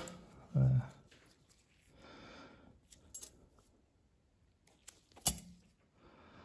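Light handling of steel surgical instruments on a cloth drape: a soft rustle, then a few small metallic clicks, the sharpest about five seconds in. A short voiced sound, like a brief word or hum, comes about half a second in.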